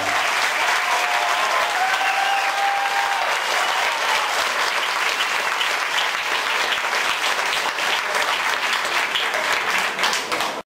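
Concert audience applauding, dense steady clapping that begins as the music stops, with a few voices calling out in the first seconds.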